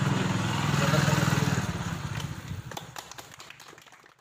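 A man's voice over a low steady rumble, then scattered hand claps from a small group of people from about halfway in, the sound fading out toward the end.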